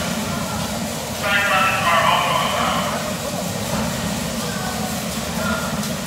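Bumper cars running on the rink floor, a steady low rumble, with a high-pitched voice calling out for about two seconds, starting about a second in.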